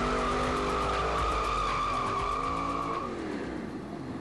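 Shelby GT500 Mustang's tyres squealing in one long, steady high note over its running engine. The squeal stops about three seconds in and the engine fades.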